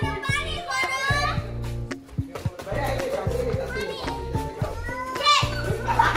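Children shouting and squealing as they play, over background music with a steady bass beat.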